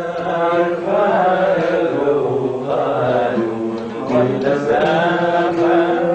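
A man singing long, held notes that bend in pitch, with an oud plucked beneath.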